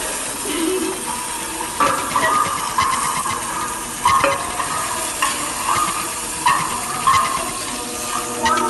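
Food frying in a pan on a gas stove, sizzling steadily, with scattered clicks.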